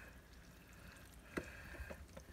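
Faint stirring of a wet, chunky casserole mixture with a metal spoon in a glass bowl, with a light click about a second and a half in.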